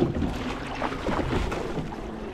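Single racing scull being rowed: the oar blades come out of the water with a sharp splash at the start, then water rushes and gurgles along the hull, with wind on the microphone.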